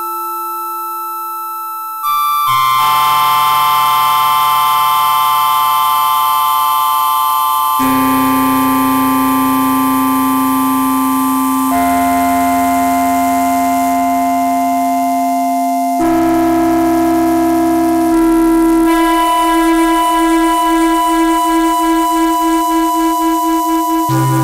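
Yamaha CS-50 analog polyphonic synthesizer holding sustained chords. A note fades out at first; about two seconds in, new chords start, each held for about four seconds before the next. In the last five seconds the sound wavers in a steady pulse a few times a second.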